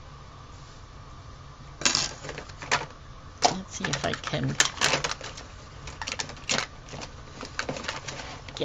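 Plastic markers and pens clattering and clicking against each other and the desk as they are rummaged through and picked out, a rapid irregular run of sharp clicks starting about two seconds in.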